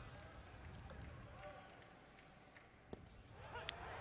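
Faint ballpark ambience with distant crowd voices and chatter. About three seconds in comes one sharp pop, a pitched fastball smacking into the catcher's mitt for a called strike.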